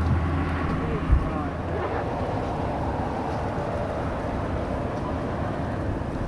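Distant BNSF freight train running on the track below a bluff: a steady low rumble that stops with a sharp thump about a second in, then a steady, even background noise.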